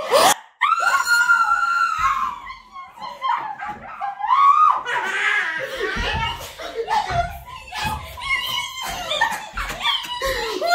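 Screams of joy: a long high-pitched scream just after a short rising cry, then excited shrieks and laughter. In the second half, several dull thuds as a person jumps on a bed.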